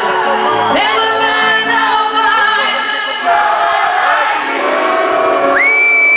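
Live dance-pop music: a woman singing into a microphone over a DJ's electronic backing, heard loud through the venue's sound system. Near the end a high note slides up and is held.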